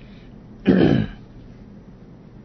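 A man clears his throat once, briefly, about two-thirds of a second in.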